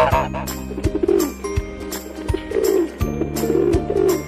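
Pigeon cooing, three low coos about a second apart, over background music with a steady beat and a jingling percussion line.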